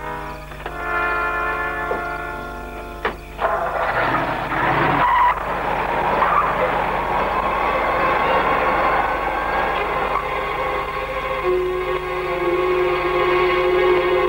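Dramatic orchestral score: held brass chords, cut by a single sharp crack about three seconds in, then a loud swell into a dense, sustained full-orchestra passage.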